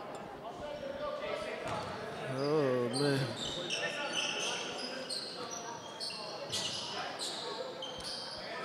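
Basketball dribbling on a hardwood gym floor, with short sneaker squeaks and echoing shouts from players in the gym. A man's voice calls out briefly about two and a half seconds in.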